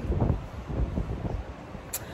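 Wind buffeting the microphone, a low rumble that eases a little through the pause, with one sharp click near the end.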